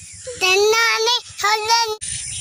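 A young boy's high-pitched voice in two short drawn-out phrases, between speaking and sing-song.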